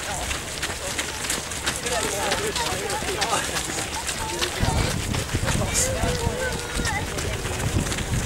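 Footsteps of a large pack of runners pounding along a dirt path, a dense patter of footfalls, with indistinct voices among them. About halfway through, a low rumble of wind on the microphone joins in.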